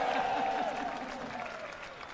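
Live audience applauding and cheering, dying down over the two seconds.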